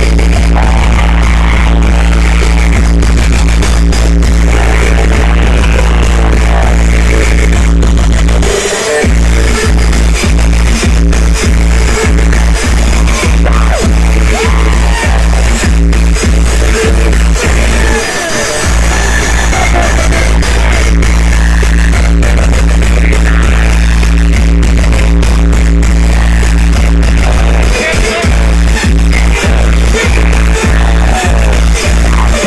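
Loud, bass-heavy dance music played through a large stacked sound system, with a steady deep bass line. The bass cuts out briefly about 9 and 18 seconds in, and again near the end, then comes back with single beat hits.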